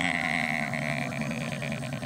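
Live audience laughing, a steady crowd sound of many overlapping voices.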